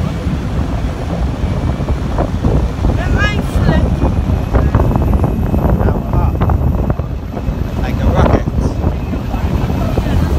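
Speedboat engines running hard as the boat races along the river, under heavy wind buffeting on the microphone and the rush of water spray.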